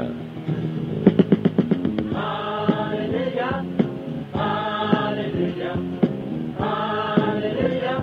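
Gospel song opening: a quick run of evenly struck instrumental notes, then a choir singing long held notes.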